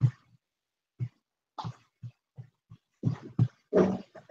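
A man's voice in short, broken bursts with silent gaps between, about a dozen of them, coming closer together near the end.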